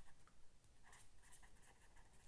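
Faint scratching of a pen writing words on paper.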